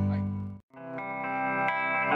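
Band music fades away to a brief gap, then an electric guitar rings a sustained chord through a chorus effect.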